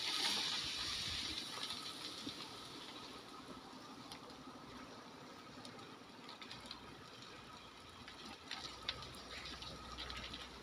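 Faint, steady outdoor hiss that fades over the first few seconds, with a few light clicks about three-quarters of the way through and a faint low rumble near the end.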